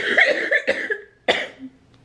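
A woman coughing repeatedly, with a sudden sharp cough just over a second in. It is a cystic fibrosis patient whose lungs are feeling the effects of Covid.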